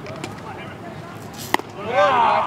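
A single sharp crack of a bat hitting a baseball about one and a half seconds in, followed right away by spectators' voices rising in shouts.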